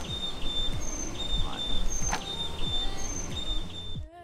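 Insects chirping in a steady run of short, high, repeated notes, with a low steady rumble beneath.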